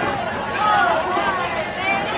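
Spectators' voices close by, talking and calling out between plays.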